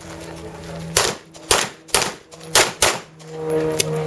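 Handgun firing five shots in under two seconds, the last two close together, during a practical-shooting stage.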